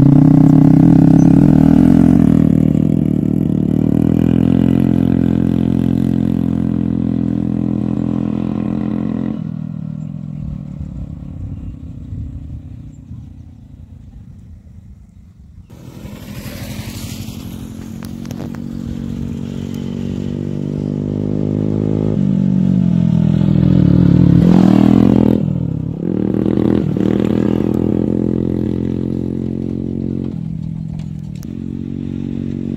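TVS Ntorq 125 scooter's single-cylinder engine, breathing through a modified aftermarket silencer, pulling away under throttle, its exhaust note fading over about ten seconds. Later a motorbike engine grows louder and passes close about 24 seconds in, dropping in pitch as it goes by.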